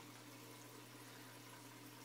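Near silence: a low steady hum with faint water noise from the turtle tank's filter.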